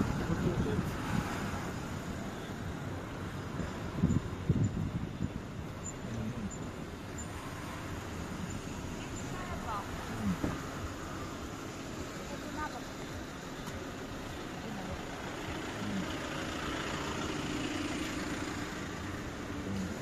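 Road traffic ambience: cars running and passing close by, with indistinct voices of people nearby. A couple of short knocks come about four seconds in.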